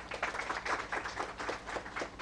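A small audience applauding lightly, many overlapping hand claps that thin out near the end.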